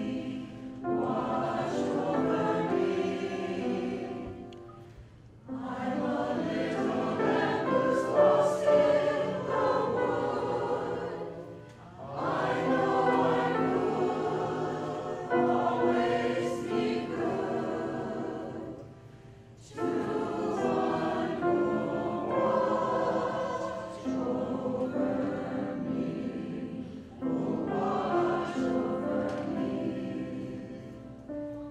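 A mixed choir of women's and men's voices singing, in sung phrases of roughly four to eight seconds with short breaks between them.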